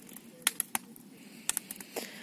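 Wood fire burning in an open metal barrel, crackling with a handful of sharp snaps over a low hiss.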